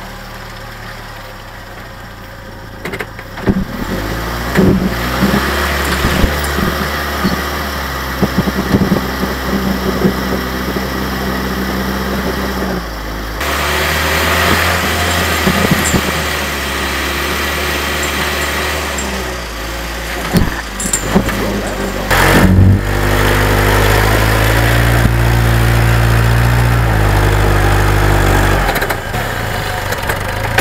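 Willys flat-fender jeep engine running at low speed over rough ground, its pitch stepping up and down several times with the throttle, with sharp knocks and rattles as the jeep jolts, the loudest about two-thirds of the way through.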